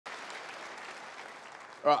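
Audience applauding, a steady wash of clapping that slowly fades, cut short by a man's voice starting near the end.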